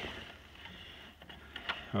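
A few faint, sharp metallic clicks as a part of a tractor's three-point hitch lift linkage is worked loose and pulled off by hand, over a low steady hum.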